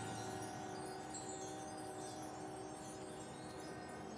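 Soft passage from a marching band's front-ensemble percussion: several steady, bell-like metallic tones ringing together and slowly dying away.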